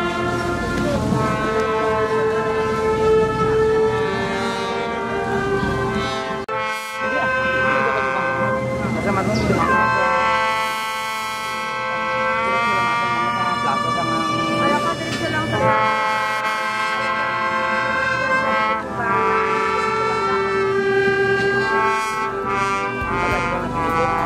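Brass band playing a tune in long held notes, with a brief break about seven seconds in.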